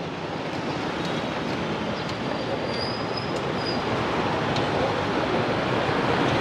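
Steady street traffic noise, mostly motorbikes, around a busy city intersection, slowly growing louder. A faint high squeal comes in briefly around the middle.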